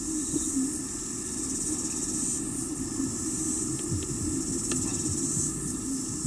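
Outdoor ambience: a steady, high-pitched chirring of insects in the background, over a low steady rumble.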